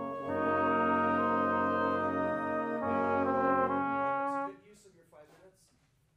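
A wind band playing slow, sustained chords with the brass to the fore, the harmony shifting every second or so. The band cuts off together about four and a half seconds in, leaving only faint rustling and clicks.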